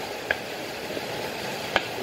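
Steady background hiss with two short clicks about a second and a half apart as a rolling pin works soft dough on a floured board.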